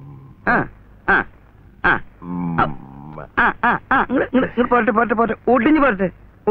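Men speaking Malayalam film dialogue in short exclamations, with one longer drawn-out vocal sound about two seconds in.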